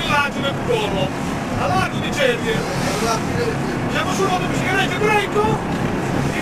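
Indistinct talking over the steady low running of a boat's engine.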